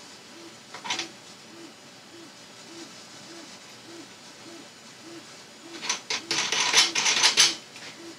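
Small hard parts clicking and rattling as hands handle the resin vat's thumb screws and knobs, with a brief click about a second in and a louder flurry of clicks and rattles about six seconds in. A faint low pulse repeats about every 0.6 seconds underneath.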